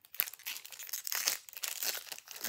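Foil wrapper of a Pokémon Fusion Strike booster pack being crinkled and torn open by hand: a quick run of irregular crackles.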